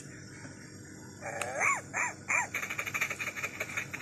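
A LeapFrog Good Night Scout talking book's speaker playing a sound effect. A click comes about a second in, then a few short animal-like calls that rise and fall in pitch, then a rapid run of ticks, about eight a second.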